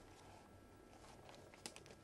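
Near silence: faint background hiss, with a few faint clicks near the end.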